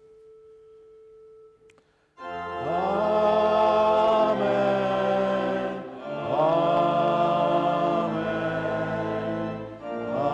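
A faint single held note, then from about two seconds in the choir and congregation singing two long held chords with organ: a sung response closing the benediction.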